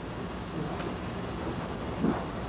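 Room tone in a pause between speech: a steady low rumble with a faint hiss.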